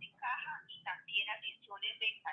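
A person talking over a mobile phone held up to the microphone, the voice thin and narrow as on a phone line; the words are not made out.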